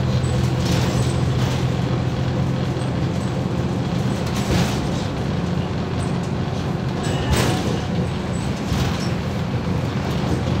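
Mercedes-Benz OM904LA four-cylinder turbodiesel of a MAZ 206 city bus running under way, heard from inside the passenger cabin. Its steady hum eases a few seconds in, and body rattles come through with a brief sharp noise about seven seconds in.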